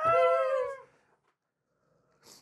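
A person's long, drawn-out vocal "ahh", sliding slightly down in pitch and lasting just under a second.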